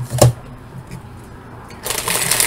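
A single knock just after the start, then quiet until near the end, when the crinkling rustle of a plastic snack bag being pulled out of a box begins.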